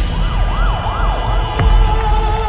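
A siren wailing, rising and falling about three times a second over a low rumble, in a film trailer's sound design. Near the end a deep boom hits and steady held music tones begin.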